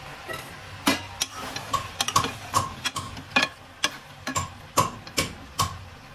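A metal spoon stirring chicken pieces and chopped tomatoes in a metal pot, knocking and scraping against the pot's side about twice a second with a short metallic ring.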